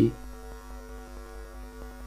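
Steady electrical hum: a low mains drone with a few steady higher tones over it, unchanging throughout.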